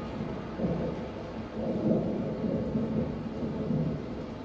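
Low rumbling noise from the dance's sound score, swelling and easing in several waves with no clear tune or beat.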